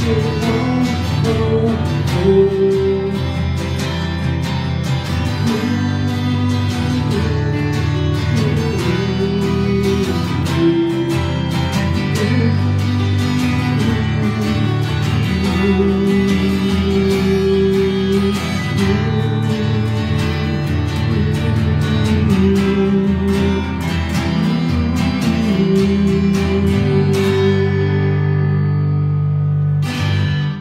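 Acoustic guitars playing the instrumental close of a rock ballad: strummed chords under a lead guitar melody, fading out at the very end.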